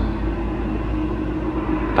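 A steady low rumble with a faint, even hum above it.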